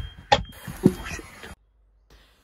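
A few knocks and a sharp click inside a car cabin, with a short "ooh" from a man and a faint high steady tone underneath; the sound cuts off abruptly about a second and a half in.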